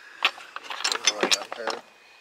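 Ceramic salt and pepper shakers clicking and knocking against each other in a quick, uneven run of small hits as a hand rummages through a box of them.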